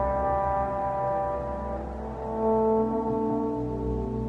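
Live improvised music from electric guitar and electric bass: long sustained notes, one chord slowly fading and new held notes coming in about halfway through, with no clear drum strokes.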